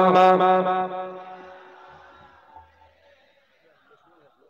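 A man chanting one long held note through a microphone and PA. The note breaks off about a second in and fades away over the next second or so.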